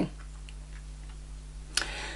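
Quiet room tone: a steady low hum with faint, scattered ticks, and a short sharp click near the end.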